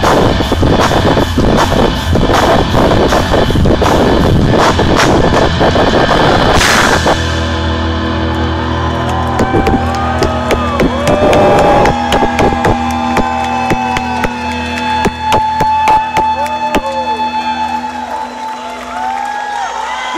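Rock band playing live, recorded with heavy clipping distortion. Drums and electric guitar pound densely for about the first seven seconds. Then the band drops to held chords under sustained, bending lead notes.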